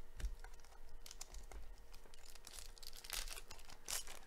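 Foil wrapper of a 2017 Donruss Racing trading-card pack crinkling and tearing open in gloved hands: a run of crackles, with louder rips about a second in and near the end.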